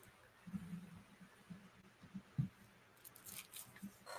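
Faint low bumps and rustles close to the microphone, with one sharper knock about halfway through and a short run of hissy clicks near the end.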